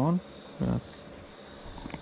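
A steady, high-pitched insect chorus droning throughout, under a man's brief words at the start and a short voiced sound just under a second in.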